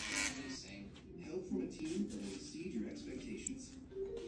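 Quiet, indistinct talking, with no clear words.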